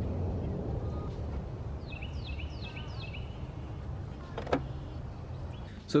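Low steady outdoor rumble, with a bird chirping four times about two seconds in, and one sharp plastic click about four and a half seconds in as a retaining clip on the engine-bay intake cover is popped loose.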